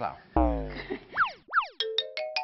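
Comic sound effects: a long falling, cartoon-like pitched glide with a low thump at its start, then two quick up-and-down pitch sweeps. Near the end, a run of short bright plinking notes begins, climbing in pitch note by note.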